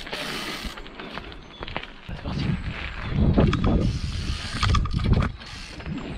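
Mountain bike rolling over gravel and asphalt: tyre noise and a low rumble, loudest in the middle, with scattered clicks and knocks from the bike.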